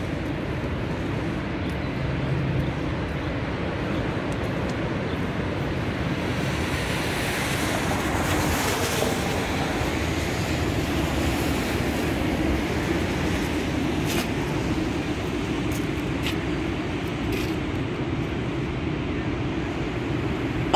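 Steady outdoor rushing noise, swelling for a few seconds near the middle, with a few faint ticks later on.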